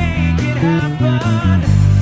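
Zajazz PMM Blue Surf electric bass played clean, without effects, in a driving run of low notes over a classic rock band backing track.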